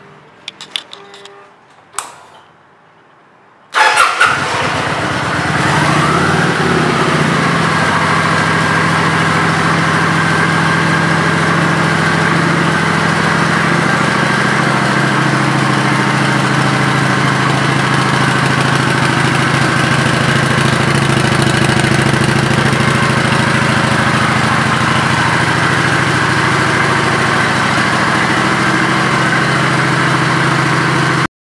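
A few clicks, then a Kawasaki Vulcan 900's V-twin engine starts almost four seconds in. It settles within a couple of seconds into a steady idle.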